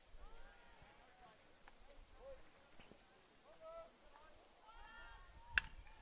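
Faint voices calling out across the field, then, shortly before the end, a single sharp crack of a metal baseball bat hitting the pitch.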